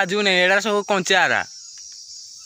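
Steady high-pitched drone of insects, heard alone near the end after a voice stops about three-quarters of the way in.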